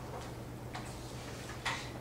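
Chalk tapping and scraping on a blackboard as equations are written: a few short, sharp ticks, the loudest near the end, over a steady low room hum.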